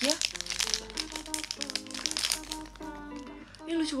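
Clear plastic gift wrapping crinkling as it is handled and opened, in irregular bursts, over background music with a simple stepping melody.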